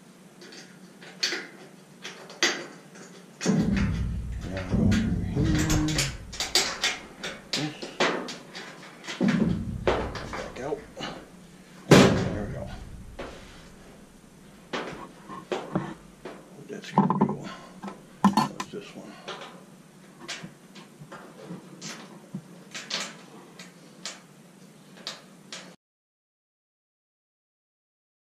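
Scattered clicks and knocks of a socket tool and screws against a dryer's sheet-metal cabinet as panel screws are driven back in, with one sharp knock about halfway through.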